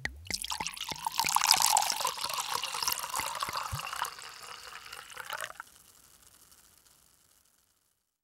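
Liquid pouring and splashing, a busy crackly stream that cuts off suddenly about five and a half seconds in and leaves a faint trickle.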